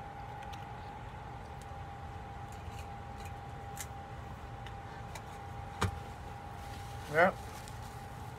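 Steady mechanical hum with a thin constant whine over it, a few faint clicks, and a brief spoken word near the end.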